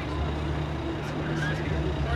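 Steady low rumble of outdoor background noise, with faint voices of people nearby.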